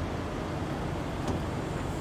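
Steady low hum of an idling engine, with one faint click a little past the middle.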